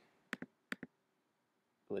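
Computer mouse clicking: two quick pairs of sharp clicks within the first second, as an image is selected and resized on screen.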